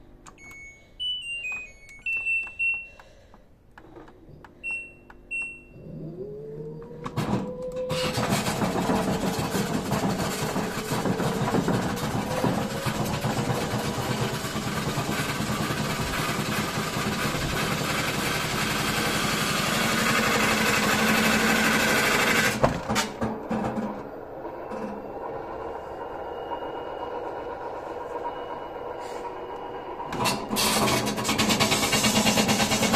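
LG WD-10600SDS front-loading washing machine: a few short control-panel beeps, then its direct-drive motor starts the drum with a rising whine about six seconds in and spins it up into a loud, steady run for about fifteen seconds. The noise drops sharply a little after two-thirds of the way through, and the machine carries on at a quieter level with a faint high whine.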